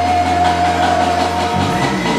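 Live blues band music: a long chord held on keyboard over a steady bass note, with the chord changing about one and a half seconds in.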